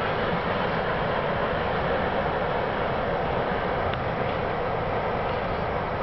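CSX freight train cars rolling past, a steady wheel-on-rail rumble and hiss with no horn or change in pitch.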